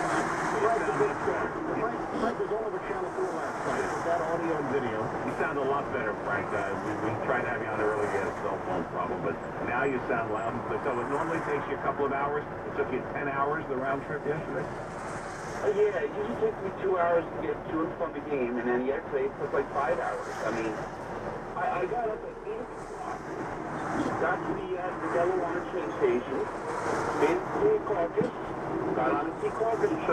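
Talk-radio speech playing on the radio inside a moving vehicle's cab, over steady road noise.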